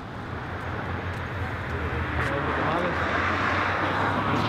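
A motor vehicle approaching along the street, its road noise swelling steadily louder, over a low steady hum.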